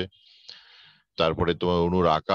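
A man lecturing, his speech broken by a pause of about a second that holds only a faint hiss and a small click.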